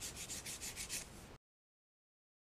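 Sanding stick rubbed quickly back and forth over a small clear plastic part, about six or seven scratchy strokes a second, smoothing down a hardened fill of plastic shavings and glue. The sound cuts off abruptly to silence about a second and a half in.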